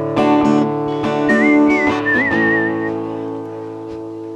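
Cutaway acoustic-electric guitar strummed in a few quick strokes, then a final chord about two seconds in, left to ring and slowly fade. A short wavering whistled tune sounds over the chord.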